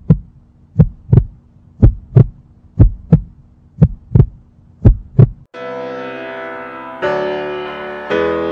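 A heartbeat sound effect: about five low double thumps, one pair each second. About five and a half seconds in, the beats stop and sustained piano chords begin, with a new chord struck near 7 seconds.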